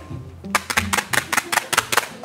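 A quick run of sharp percussive clicks, about eight a second, starting about half a second in. It is an edited-in sound effect in a music-backed soundtrack.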